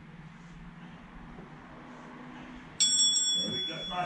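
An interval timer's bell-like alarm rings about three seconds in, a high ringing tone lasting about a second, signalling the end of a 30-second work interval.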